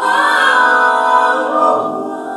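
A woman singing a long, loud held note that comes in suddenly, with several sustained pitches underneath like a chord, as in a live jazz band performance.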